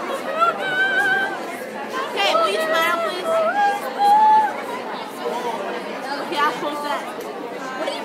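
Young girls' high voices chattering and laughing over one another, several talking at once.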